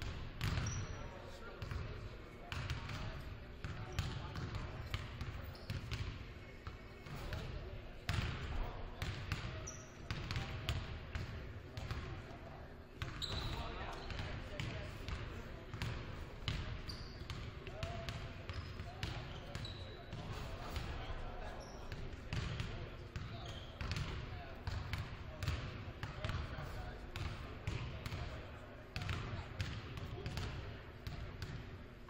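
Several basketballs being dribbled at once on a hardwood gym floor, the bounces overlapping in an irregular patter that echoes around the hall, with voices chattering in the background.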